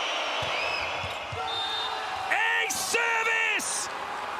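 Indoor arena crowd noise during a volleyball rally, with a few dull thumps of the ball being struck in the first second and a half. Loud shouting voices follow from a little over two seconds in as the point is won.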